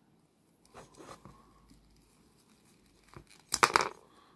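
Plastic action figure parts being handled and fitted together: faint clicks about a second in, then a short, louder crackle of clicks near the end as the detachable forearm is worked at the elbow joint.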